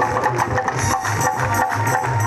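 Loud amplified Hindi devotional jagran music with a steady, quick drum beat, and a crowd clapping along.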